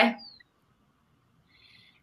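A woman's voice trails off at the end of a word, then near silence over the call audio. A faint short hiss, like an intake of breath, comes just before she speaks again.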